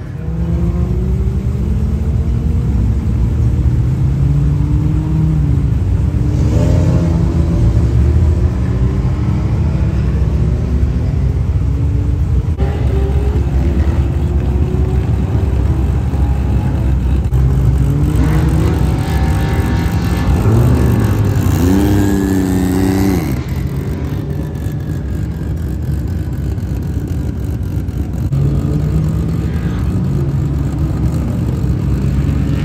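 Car engines revving hard again and again at a burnout event, the engine note climbing and dropping repeatedly. The biggest rise and fall comes about two-thirds of the way through.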